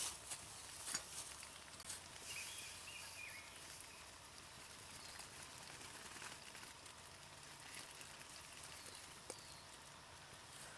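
Faint wood campfire crackling over a soft steady hiss, with a few sharp pops in the first two seconds and one more near the end.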